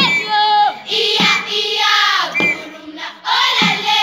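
A group of schoolchildren singing a Maasai folk song together, with a low thump keeping time about every 1.2 seconds.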